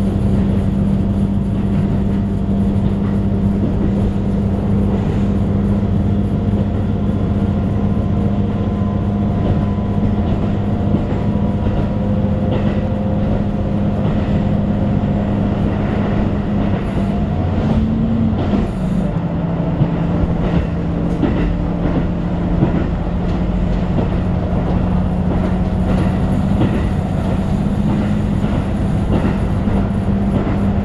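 Diesel railcar running along the line, heard from inside the passenger cabin: a steady engine drone with the wheels clicking over rail joints. The engine note steps down a little about two-thirds of the way through.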